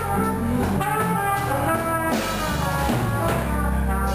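A live band playing: a trumpet carries the melody between sung lines, over electric guitar and electric bass.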